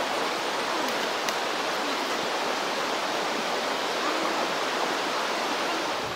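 A backcountry river running over rocks: a steady, even rush of water that holds the same level throughout.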